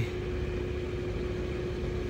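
Steady mechanical hum with a single constant mid-low tone over a noise haze.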